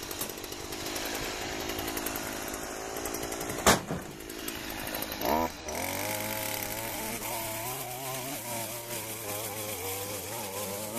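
Stihl gas string trimmer running at high revs, cutting weeds, with a single sharp knock about halfway through. Its engine then drops to a lower, slightly wavering idle after a brief blip of throttle.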